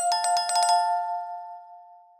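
Notification-bell sound effect of a subscribe-button animation: a rapid jingle of bell strikes for nearly a second over two steady ringing pitches, then the ring fades away.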